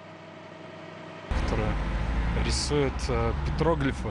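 Low, steady rumble of city street traffic that starts abruptly about a second in, under a man talking; before that, only a faint hum.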